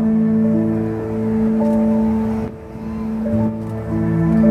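Slow music accompanying a Chinese dance, with long held notes. It softens briefly about two and a half seconds in, then swells again.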